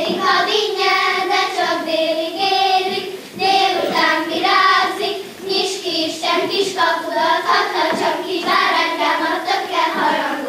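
Group of young girls singing a Hungarian folk song together in unison as they dance in a circle, with faint dance steps on the stage.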